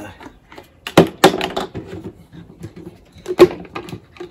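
Handling noises: a few sharp knocks and rattles of plastic bottles and sprayer parts being picked up and set down on a table, loudest about a second in and again near the end.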